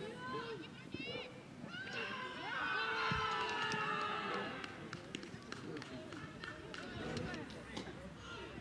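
Young footballers' voices shouting and cheering, loudest about two to four seconds in, as a goal is celebrated, followed by a scattering of handclaps. There is one low thump in the middle.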